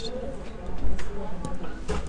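A few soft computer-mouse clicks, about every half second, over faint low vocal murmuring.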